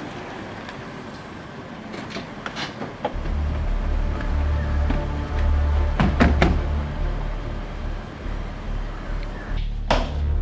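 A car running as it pulls up, with sharp clicks of its doors around two and six seconds in. Music with a heavy bass comes in about three seconds in and becomes the loudest sound.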